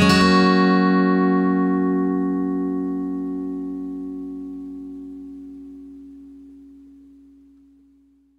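The final chord of an acoustic pop song on acoustic guitar, left to ring out and slowly fading away to silence over about eight seconds.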